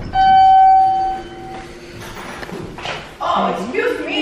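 Elevator arrival signal: one loud, steady electronic beep a little over a second long, then fading.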